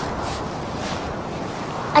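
Steady, even outdoor background noise, with wind on the microphone and no distinct events.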